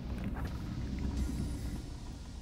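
Low, steady rumble inside a car cabin, with faint rubbing of the hand-held phone as it is moved.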